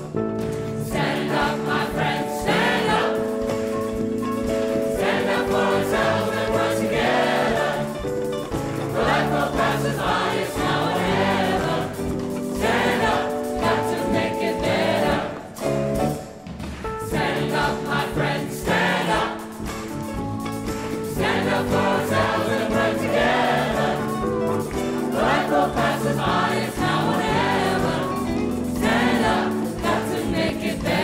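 A large choir singing a South African song in full chords, holding long notes, with brief breaks between phrases.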